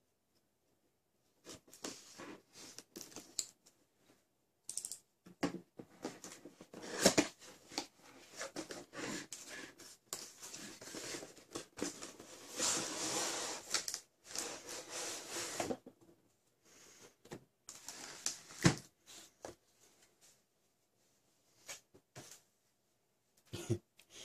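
A cardboard retail box being cut open with a utility knife and unpacked: small clicks and scrapes of the blade and cardboard. About halfway through comes a longer scraping rustle as the inner cardboard tray is slid out of the box.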